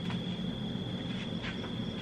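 Background room tone: a steady high-pitched whine with a low hum underneath, with no speech.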